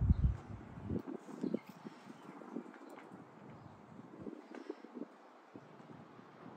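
A dull thump at the very start, then a few faint, irregular light knocks and taps.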